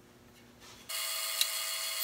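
Faint room tone, then a bandsaw running free with a steady, high whine that comes in suddenly about a second in, with one sharp tick partway through.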